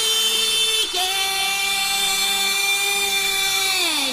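Sustained buzzy electronic synth tone in a dance-music mix, holding one note, stepping down slightly about a second in, then gliding down in pitch near the end as a build-up into the beat drop.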